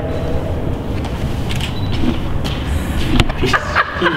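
Car engine and exhaust rumbling steadily, echoing in a parking garage, with a sharp click about three seconds in.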